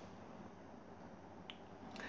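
Near silence: faint room tone, with one short, faint click about one and a half seconds in.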